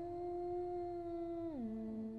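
A woman humming a long held note that slides down to a lower held note about one and a half seconds in.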